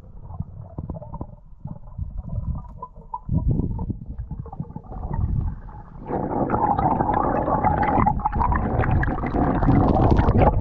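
Underwater sound picked up by a camera in the sea: water moving and gurgling against the housing, with low rumbling and small knocks, growing louder and fuller about six seconds in as the swimmer moves.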